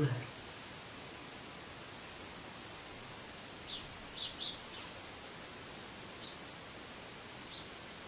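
Quiet room tone, a steady hiss, with a few faint, short, high chirps from a small bird in the second half.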